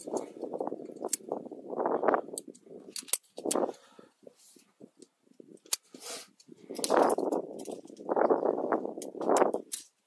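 Climbing hardware clinking and clicking with scuffs on rock as a climber moves, over irregular bursts of rushing noise about a second long each.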